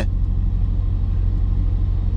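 A steady, loud low rumble with no change in it.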